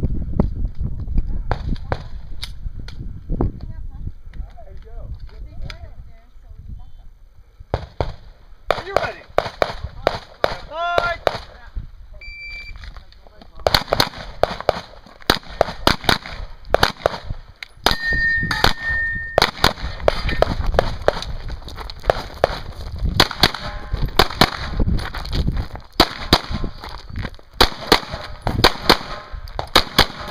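Handgun fire on a practical-shooting stage: a short beep about twelve seconds in, then rapid shots in quick strings with brief pauses between them, running on to the end.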